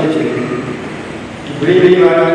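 Only speech: a man speaking at a microphone, with a brief lull in the middle.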